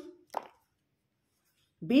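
A pause in speech: one short pop about half a second in, then near silence, with a voice starting again near the end.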